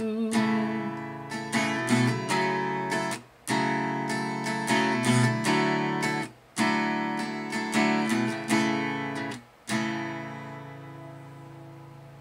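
Acoustic guitar strummed in chords, in phrases broken by short stops about every three seconds. The last chord is left ringing and fades out over the final two seconds.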